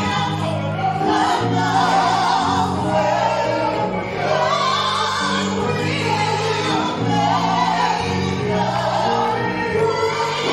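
A gospel praise team of men and women singing together in harmony, voices with vibrato, over instrumental accompaniment holding long low chords that change every second or two.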